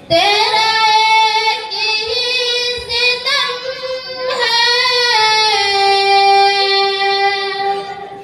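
A young female voice sings a ghazal solo into a handheld microphone, unaccompanied, in melodic phrases with long held notes. The last note is held for about two seconds before she breaks off near the end.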